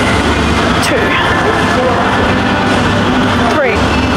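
Steady noise of a busy gym with people's voices in the room, and a short falling vocal sound near the end.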